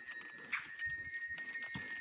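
Bells on a working pair of oxen ringing steadily as the team hauls logs, with scattered short knocks and clanks.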